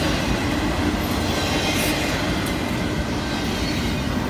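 Double-stack intermodal freight train passing at speed close by: a steady rumble of steel wheels on the rails and the clatter of the well cars going by.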